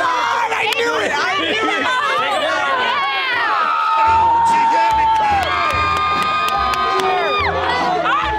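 A crowd of teenagers shouting and cheering in the stands, many voices at once. From about halfway, long held notes over a low pulsing beat join in.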